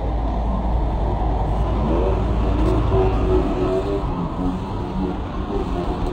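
A steady low rumble that drops away about halfway through, with faint voices over it.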